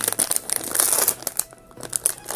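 Foil blind-bag wrapper crinkling and crackling as it is pulled open by hand, busiest in the first second and a half and easing off briefly near the end.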